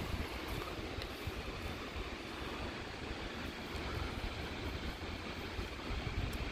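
Steady wind buffeting the microphone, with a continuous hiss of surf on a beach.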